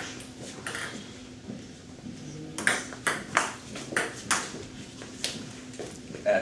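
Table tennis rally: the celluloid ball clicks sharply off the paddles and the table, a quick run of hits about three a second that starts about two and a half seconds in.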